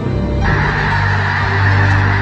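A large flock of geese honking in a dense chorus, coming in suddenly about half a second in, over music.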